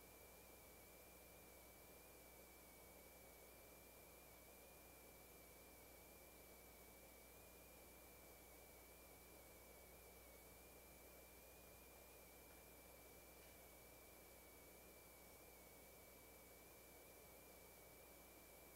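Near silence: room tone with a faint steady hiss, a low hum and a thin, unwavering high-pitched tone.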